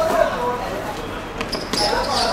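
Players calling out to one another during a football game on a hard concrete court. About one and a half seconds in there are a few sharp knocks as the ball is kicked and bounces off the hard surface.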